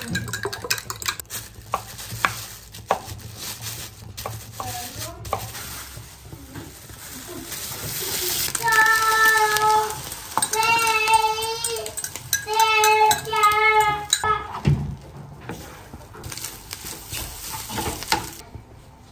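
A fork beats eggs in a glass measuring jug with rapid clinking. The eggs are then poured into a hot frying pan with ham and sizzle, and are stirred in the pan. Midway, the loudest sound is a high, wavering pitched sound in three stretches.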